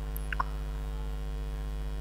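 Steady electrical mains hum, a low buzz with evenly spaced overtones, with a tiny faint blip about a third of a second in.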